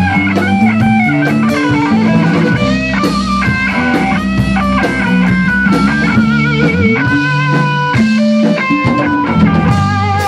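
Instrumental rock played live by a small band: an electric guitar lead line over bass guitar and a drum kit with cymbals ticking. From about six seconds in the guitar holds several notes with vibrato.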